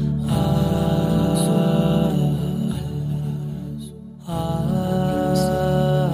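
Wordless vocal background music: long held sung 'aah' notes in slow phrases, with a brief break about four seconds in.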